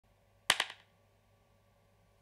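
A quick cluster of three or four sharp clicks, about half a second in, fading fast.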